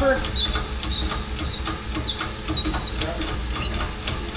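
Hand-operated cab-tilt pump on an LMTV being worked, its lever giving a run of short high squeaks and clicks, over a steady low rumble.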